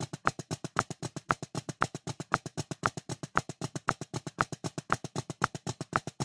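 Drumsticks playing the flam taps rudiment in 2/4 at a fast tempo: a quick, even stream of flammed strokes, with a brighter, higher-pitched click recurring about twice a second.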